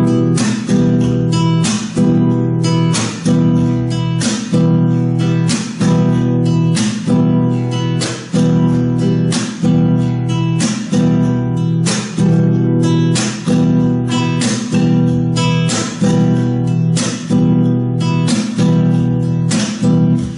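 Nylon-string flamenco guitar strummed in a steady, quick 4/4 pattern on one chord: thumb down, thumb up, then the middle and ring fingers down, with the thumb landing on the sixth string and the palm muting the chord. The repeating strokes give a regular pulse with a short break in the ringing about once a second.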